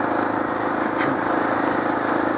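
Suzuki DR650's single-cylinder four-stroke engine running steadily as the motorcycle cruises at low speed.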